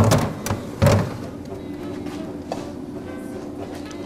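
Two dull thuds a little under a second apart as a kitchen freezer door is handled, then soft background music with steady held notes.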